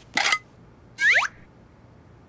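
Cartoon sound effects: a short pop-like sound near the start, then a quick whistle-like sound falling steeply in pitch about a second in.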